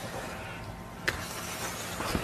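Handling noise from a bulletproof vest being turned over in hands close to a phone microphone, with one sharp click about a second in.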